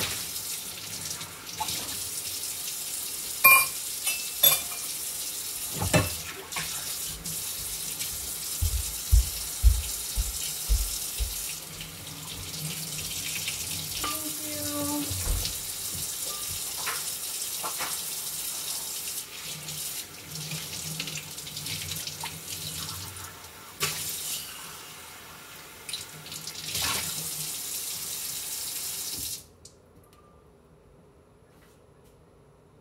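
Kitchen faucet running steadily into the sink while dishes are washed by hand, with scattered clinks and knocks of dishes, a quick run of low knocks, and a short ringing clink. The water shuts off suddenly near the end.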